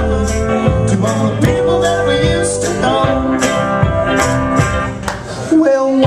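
A live roots band playing an up-tempo country-bluegrass song: a washtub bass, acoustic and electric guitars and percussion, steady and loud, with a driving beat.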